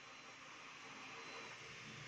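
Near silence: faint steady room hiss with no distinct sound.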